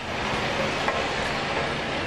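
Liquid pouring from a watering can and splashing onto freshly laid asphalt, a steady hiss.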